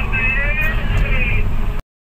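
Excavator diesel engine running steadily under a man's voice, which stops about a second and a half in; all sound cuts out abruptly just before the end.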